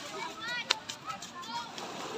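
Distant voices of children and adults playing in the sea, with high-pitched calls and shouts over a steady wash of water. A single sharp click stands out about a third of the way in.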